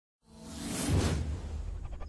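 Logo-intro whoosh sound effect: a rushing sweep that swells up and peaks about a second in over a low droning bass, then quick, even pulses begin near the end.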